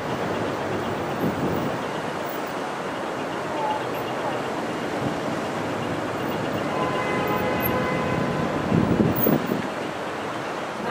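Steady outdoor city ambience: an even wash of traffic noise, with a few faint held tones appearing about seven seconds in.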